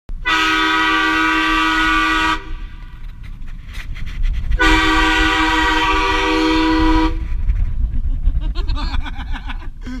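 Truck-mounted train horn blasting twice, each blast about two seconds long and sounding a chord of several steady tones.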